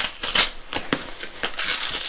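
A cardboard shipping box being torn and forced open by hand: short crinkling, ripping bursts, with a longer rip near the end.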